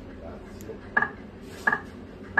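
Video slot machine's reels stopping one at a time, each landing with a short, sharp chiming tone; two stops fall in these seconds, about 0.7 s apart.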